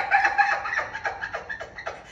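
A woman laughing: a run of quick, high-pitched giggles that fade toward the end.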